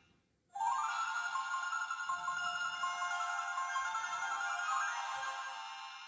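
Talking plush doll's small built-in speaker playing a bright electronic jingle, a ringtone-like melody that starts about half a second in and fades out near the end.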